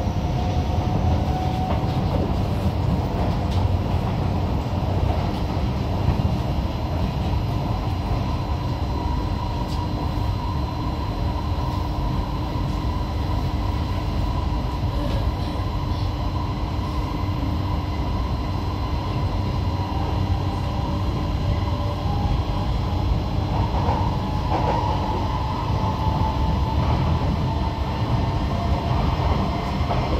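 Cabin noise inside a Kawasaki–CSR Sifang C151B electric train running on elevated track: a steady rumble of wheels on rail, with a faint motor whine that rises in pitch over the first couple of seconds.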